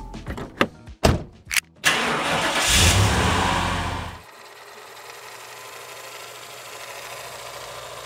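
Car sound effect: several sharp clicks and knocks, then a car engine starting and running loudly about two seconds in. After about four seconds it drops to a quieter steady hum.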